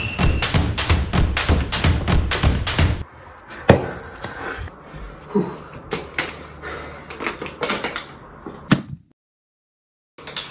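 Background music with a steady beat, cutting off abruptly about three seconds in. Then there are scattered knocks and taps of small objects being picked up and set down on a desk, with a sharp knock just before a second of dead silence near the end.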